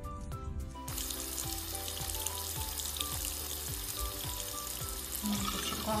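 Background music, then from about a second in a thin stream of tap water running steadily into a sink, with the music carrying on underneath.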